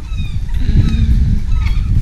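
Wind buffeting the camera's microphone: a loud, gusting rumble, with a faint short vocal sound about a second in.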